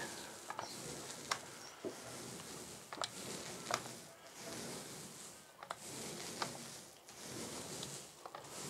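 Paint roller on an extension pole rolling wet paint across a ceiling: a soft, sticky hiss that swells and fades with each stroke, with a few sharp clicks along the way.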